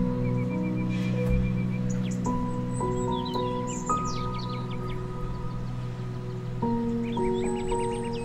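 Slow, calm background music of long held notes changing every second or two, with bird chirps twittering over it in two bunches, about three seconds in and again near the end.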